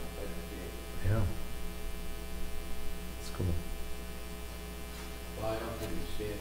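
Steady electrical mains hum on the audio, with a few brief faint voice sounds about a second in, in the middle and near the end.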